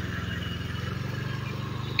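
Motorcycle engine running at low speed, a steady low hum.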